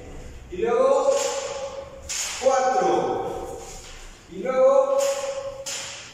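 A voice in three drawn-out, pitched phrases about two seconds apart, each held and falling slightly at the end.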